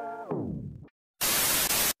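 Intro music sliding down in pitch and dying away like a tape stop, a moment of dead silence, then a loud burst of white-noise static lasting under a second that cuts off abruptly: an edited-in transition effect.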